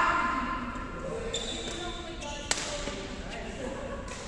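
Badminton being played: a single sharp crack of a racket striking a shuttlecock about two and a half seconds in, after a voice calls out loudly at the start.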